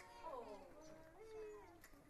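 A community choir making quiet, animal-like vocal sounds: several voices overlap in wavering glides that rise and fall in pitch, with one held note about midway.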